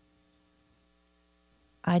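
Faint, steady electrical mains hum in the recording, a few steady tones with no other sound during a pause in speech. A woman's voice comes back in near the end.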